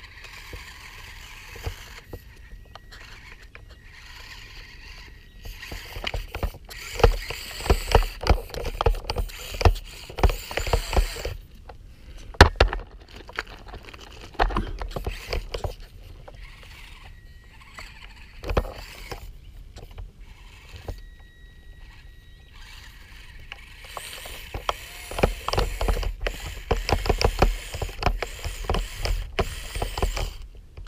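Losi Micro 1:24 rock crawler driving over landscaping stones: gravel and pebbles crunching and clicking in spells, with a brief thin whine from its small electric motor now and then.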